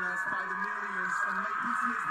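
Quiet speech of a man giving an awards-show acceptance speech into a microphone, heard as playback from the video being watched, over a steady hum.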